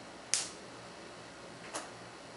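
Two sharp plastic clicks as hair rollers are unclipped: a loud one just after the start and a fainter one near the end.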